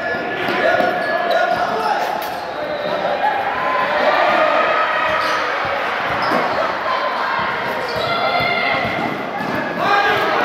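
A basketball bouncing on a gym floor during a game, with short knocks of play mixed into indistinct shouting from players and spectators, all echoing in a large hall.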